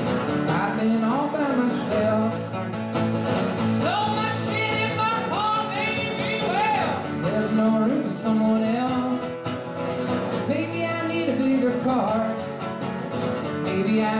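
Live solo acoustic performance: a steel-string acoustic guitar strummed steadily, with a man's voice singing long sliding phrases over it.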